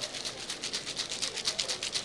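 Freezeez toy ice cream maker shaken hard by hand, the ice, salt and water inside rattling against the shaker in a rapid, steady rhythm of about six beats a second.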